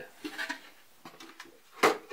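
A skateboard being handled among stacked decks: quiet handling, then one sharp knock near the end as the board strikes something.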